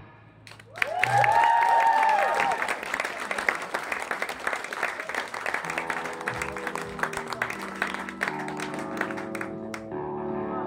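Audience applause and cheering with whoops, breaking out about a second in and slowly dying down. From about halfway, sustained electric guitar and bass notes ring out softly between songs.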